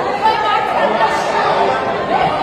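Many voices talking over one another at once, a loud hubbub of people arguing in a heated confrontation.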